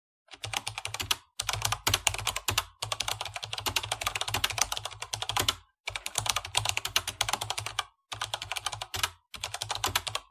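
Keyboard typing: rapid runs of key clicks in about six bursts, with brief pauses between them.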